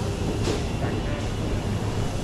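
Steady low hum and hiss of a supermarket's refrigerated chest freezers and ventilation, with a short sharp sound about half a second in.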